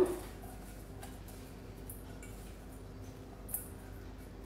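Faint, soft rustling of hands tossing oiled rocket leaves in a stainless steel bowl, over a low steady hum, with one small click about three and a half seconds in.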